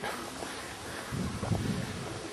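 Steady outdoor hiss with light wind buffeting the microphone, a little stronger in the second half.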